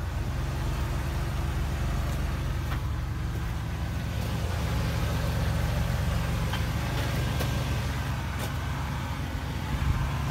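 1995 Buick LeSabre's 3.8-litre V6 idling steadily, a low even rumble, with a few faint clicks over it.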